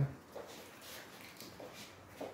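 A mostly quiet room with a few faint soft handling noises, one about half a second in and another near the end, as blue protective tape is worked loose on the stove's glass top.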